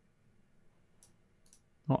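Two faint computer mouse clicks, about half a second apart, in an otherwise quiet room.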